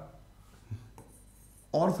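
Dry-erase marker faintly scratching on a whiteboard as letters are written, between a man's spoken words.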